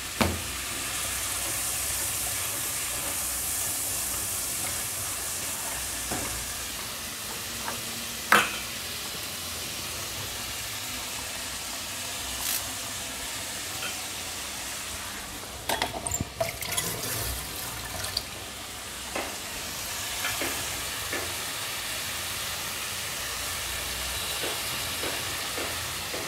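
Fish frying in hot oil in a kadai on a gas stove: a steady sizzle, with a few sharp clinks of utensils around the middle.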